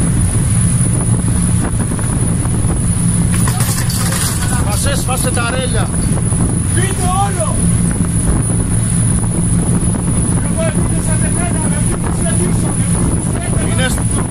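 Patrol boat's engines running with a loud, steady low drone. Men's voices call out over it in the middle and again near the end.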